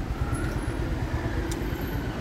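Street traffic noise: a steady low rumble of vehicles on the road, with a brief click about a second and a half in.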